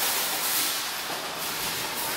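Empty wire shopping cart rolling and rattling across a hard store floor, a steady noisy clatter.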